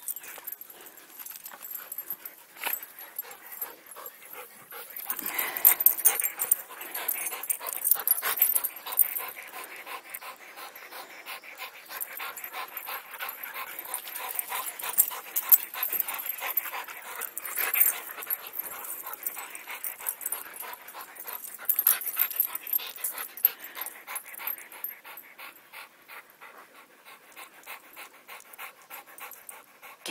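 A dog panting hard in excited play, in quick rough breaths that grow louder in stretches.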